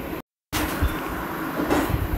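Steady low background rumble and hiss of the room, with no speech. About a quarter second in it drops for a moment to dead digital silence, a break in the recording, then resumes.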